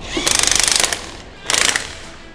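DeWalt XR cordless impact wrench hammering in two bursts of rapid impacts, the first under a second long and the second shorter near the end. It is driving the threaded rods of a coil-spring compressor to compress a front strut's coil spring.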